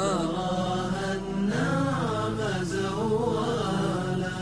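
Male voice singing a gliding, drawn-out Arabic nasheed line over a steady low sustained backing drone. The line pauses briefly just over a second in, then a new phrase begins.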